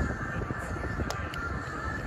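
Wind rumbling on the microphone, with two sharp taps about a quarter-second apart.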